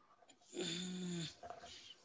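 A person clearing their throat once, lasting under a second.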